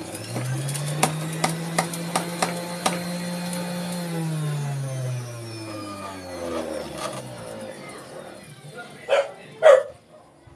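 Electric centrifugal juicer motor running with a steady hum while pineapple is pushed down the feed chute, with a few sharp clicks. About four seconds in it is switched off and the hum falls in pitch as the motor winds down over about three seconds. Two loud knocks come near the end.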